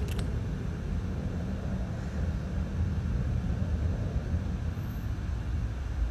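Steady low rumble of outdoor background noise, with a faint click right at the start.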